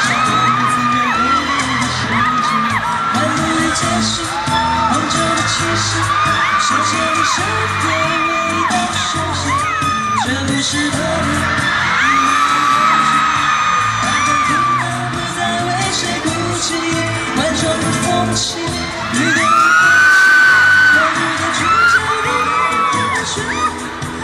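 Live pop concert music with a heavy beat from the stage sound system, under many high-pitched screams and cheers from a crowd of fans. The screaming swells louder about twenty seconds in.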